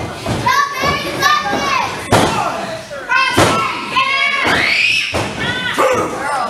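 Children in the crowd shouting and cheering in high voices, several calls that rise and fall. A few sharp thumps of impacts on the wrestling ring's mat.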